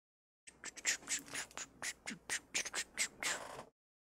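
Trading cards being handled and shuffled: an irregular run of about a dozen short scratchy clicks and rustles.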